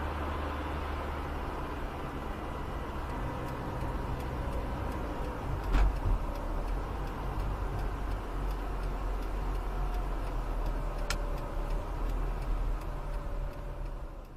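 Road traffic heard from a car stopped at an intersection: a steady low engine hum, with motorbikes and other vehicles around it. There is a knock about six seconds in and a sharp click near eleven seconds.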